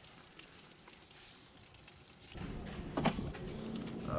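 Near silence at first, then from about two seconds in a rustling, crackling handling noise with one sharp knock about a second later.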